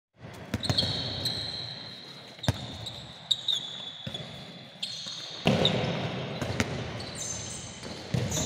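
A handball thudding on the sports-hall floor at irregular moments, about eight times, mixed with high squeaks of sneakers on the court surface, all echoing in the large hall.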